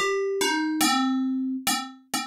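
Ableton Operator FM synth playing four plucked notes, each with a bright, metallic attack whose upper overtones die away quickly while a lower tone rings on; the first note is higher and the rest step down. The operator envelope's decay is being shortened to make the sound pluckier.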